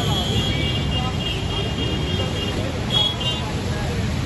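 Road traffic noise from slow-moving cars and motorbikes, a steady low rumble, with indistinct people's voices in the background. Two or three short high beeps sound about three seconds in.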